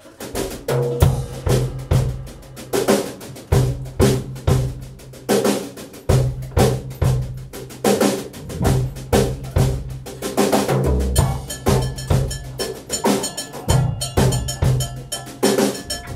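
Live band playing, led by a drum kit with snare and bass drum hits over a low, steady bass line. The music strikes up at the very start.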